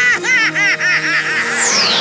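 A cartoon character's high, rapid cackling laugh, about seven quick bursts over trailer music, ending a little past the first second. A high falling swoosh then slides down to the end.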